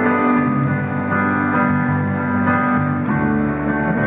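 A live guitar and electronic keyboard duo playing an instrumental passage between sung lines, with steady sustained chords.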